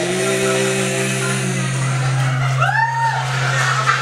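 Live acoustic guitar accompaniment between sung lines of a reggae song, a steady low note and a held chord ringing under it, with a short rising-and-falling whoop about two and a half seconds in.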